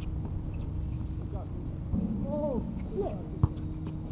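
Outdoor basketball play: a basketball bounces on the court with a sharp thud about three and a half seconds in, over players' distant voices and short calls.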